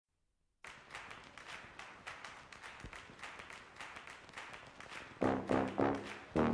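Intro music: after a brief silence, a soft, quick ticking percussion rhythm, then louder pitched melody notes come in about five seconds in.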